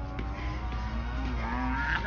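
A man's voice held in one long, low, drawn-out sound, its pitch wavering slowly up and down.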